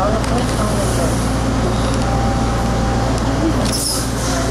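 Steady low hum of a Bombardier T1 subway train standing at a station, with people's voices from passengers walking along the platform. A short hiss comes near the end.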